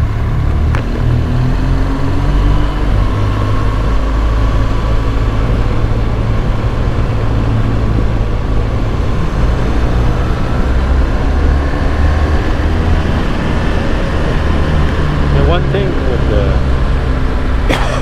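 Adventure motorcycle engine running under way, its pitch rising and falling with the throttle and gear changes, over steady rushing wind noise.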